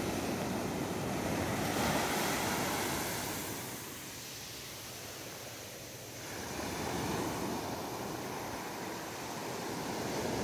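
Small waves breaking and washing up a sandy beach: a steady hiss of surf that swells and fades, dipping about four seconds in and building again around seven seconds.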